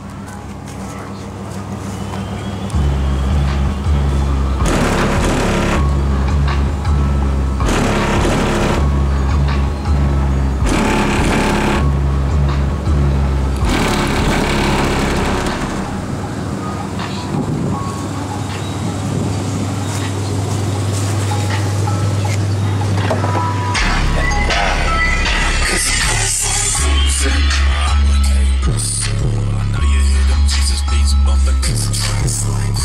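Music played loud through a van's car audio system, its DC Audio Level 4 XL 15-inch subwoofers pushing deep bass notes that change every second or two, starting about three seconds in.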